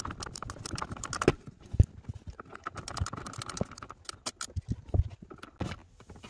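Ratchet wrench clicking in quick, irregular runs as the accelerator pedal's 10 mm hex bolt is undone, with a few knocks of the pedal assembly being handled; the sharpest knock comes about two seconds in.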